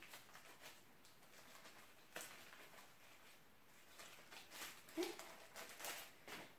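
Near silence: room tone with faint handling of the filter paper and its packet, a light click about two seconds in and soft rustling near the end.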